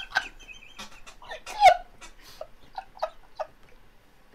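Two men laughing hard, in short breathless, wheezing bursts that fade away, with one louder high squeal of laughter a little over one and a half seconds in.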